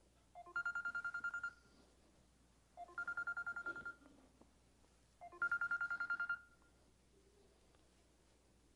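Mobile phone ringing: a rapid trilling electronic ring in bursts of about a second, heard three times about two and a half seconds apart.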